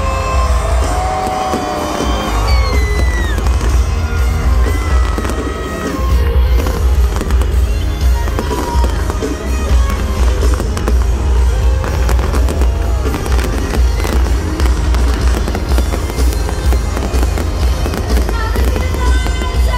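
Fireworks launching and bursting in many quick bangs and crackles, over loud concert music with a heavy bass.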